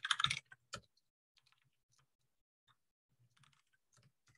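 Typing on a computer keyboard: a quick, louder cluster of keystrokes at the start, then a few faint, scattered key taps.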